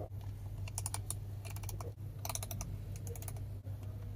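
Steering-wheel volume roller of a Li Xiang One clicking through its detents as it is scrolled, in four quick runs of ticks over a steady low hum.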